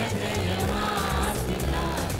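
A mixed choir of women and men singing together through stage microphones, holding long sung notes.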